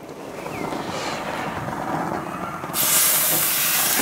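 Whole fish laid on the hot, freshly oiled cast-iron grate of a gas grill and sizzling. A softer hiss at first, then a loud sizzle sets in suddenly near the end as a fish meets the grate.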